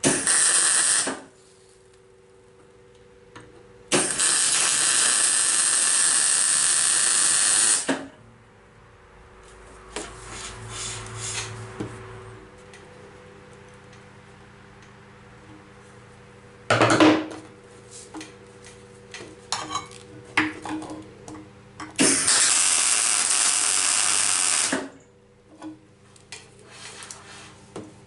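MIG welding: the arc crackles in three steady bursts, a short one at the start, one of about four seconds a few seconds in, and one of about three seconds near the end. Between the welds come clicks and knocks of metal being handled over a faint steady hum.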